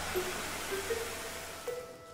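A whoosh of hissing noise that fades away through the two seconds, with a few short, soft musical notes over it.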